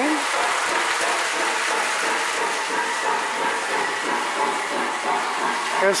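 Lionel three-rail O-gauge toy train running along the layout track: a steady rolling and motor noise from the locomotive and cars on the rails.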